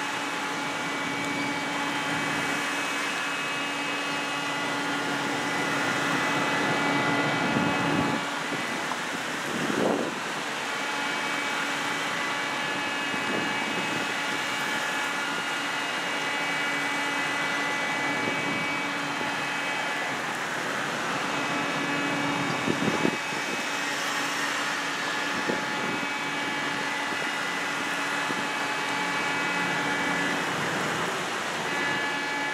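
Police cars in a slow procession passing one after another, each one's engine and tyre noise swelling briefly as it goes by, over a steady engine hum that drops out twice and comes back.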